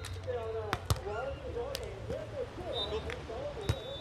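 Beach volleyball struck by players' hands during a rally: a few sharp slaps, the loudest about a second in, with players' voices calling between them.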